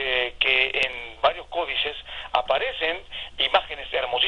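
Speech only: a man talking, his voice thin and telephone-like.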